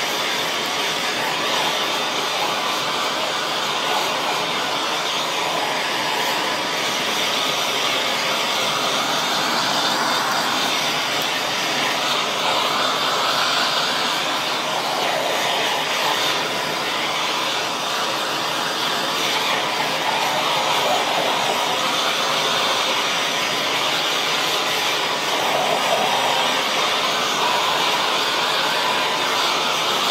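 Handheld gas blowtorch burning with a steady, loud hiss as its flame sears the outside of a rib roast.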